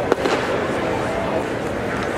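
A pitched baseball popping once, sharply, into the catcher's leather mitt just after the start, over a steady murmur of voices from the ballpark crowd.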